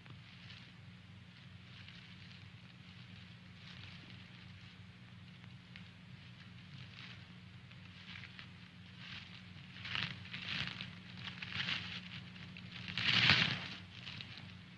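Rustling and crackling of brush and dry leaves, sparse at first and then thicker over the last few seconds, with the loudest burst near the end. A steady low hum runs underneath.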